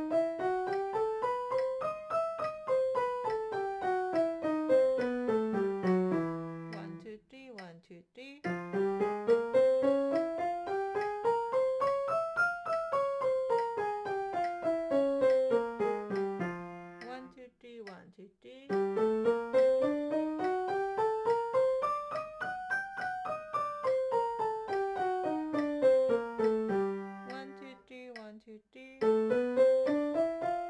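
Yamaha piano playing two-octave harmonic minor scales with both hands an octave apart, three even notes to each beat at 70. Each scale climbs two octaves and comes back down in about eight seconds, with a pause of a second or two between runs.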